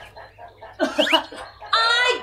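Chicken clucking: a few short clucks about a second in, then a longer, louder squawk near the end.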